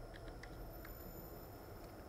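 Faint computer mouse clicks on a spin button, a handful of light ticks, over a low steady hum.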